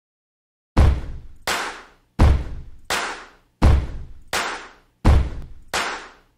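A steady beat of heavy, deep drum-like hits, evenly spaced about 0.7 s apart and alternating louder and softer, starting about a second in. The hits are eight in all, each ringing away to silence before the next.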